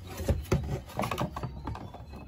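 Irregular light knocks, clicks and scrapes of a glass bottle being drawn out of its cardboard box, the glass bumping against the cardboard partitions.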